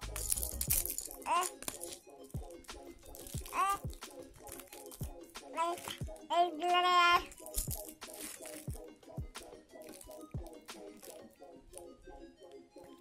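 A baby squealing in short rising bursts several times, with one longer held squeal around six to seven seconds, over background music. Small clicks and crinkling come from the plastic toy being chewed.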